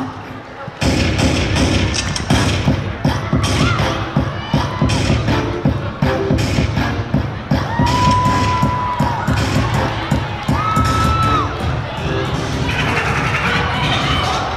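Loud dance music with a heavy, steady beat, coming back in hard about a second in after a brief drop, while a crowd cheers and shouts over it.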